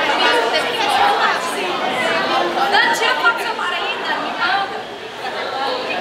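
Many voices chattering at once, a loud overlapping hubbub of conversation with no single voice standing out.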